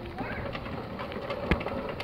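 Quiet outdoor background with one sharp tap about one and a half seconds in.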